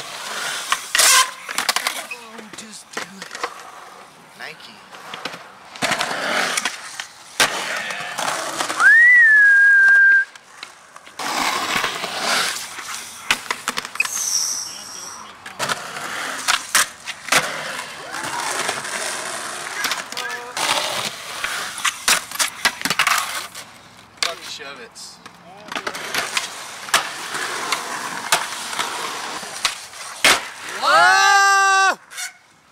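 Skateboard wheels rolling on concrete, with repeated sharp clacks of tail pops, board flips and landings. About nine seconds in, a loud whistle-like tone rises and then holds for about a second.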